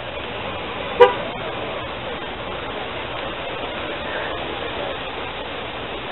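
Steady street and traffic noise, with one short, loud car-horn toot about a second in.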